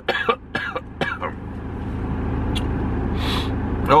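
A man coughing and clearing his throat a few times, then the steady low rumble of a vehicle in the cab of a van idling at traffic lights, slowly getting louder.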